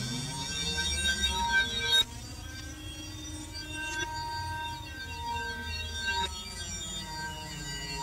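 Experimental electronic music from a Synton sound-effect box: steady, wavering high electronic tones over a low rumble, with a sudden drop in loudness about two seconds in.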